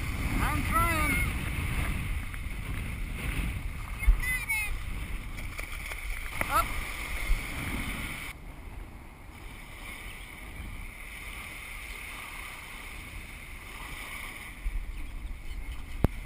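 Wind on the microphone and small waves washing in the shallows, a steady rushing noise. A few short high chirping calls sound in the first seven seconds.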